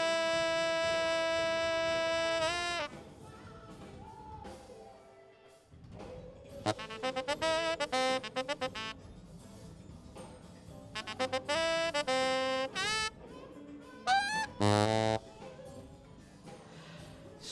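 Recorded saxophone track playing back through the mixing console: one long held note for nearly three seconds, then quieter gaps broken by runs of quick notes. The tone is real shrill around 3 kHz, a harshness that calls for an EQ cut there.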